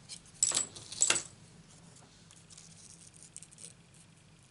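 Scissors snipping twice, trimming a corner off a paper mask, followed by faint handling of the paper.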